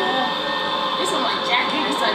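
Quiet, scattered talking over a steady rushing noise.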